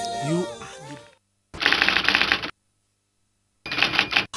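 A voice trails off in the first second, then after a short silence come two bursts of rapid clattering clicks, the first about a second long and the second about half a second, each cutting off sharply with silence between.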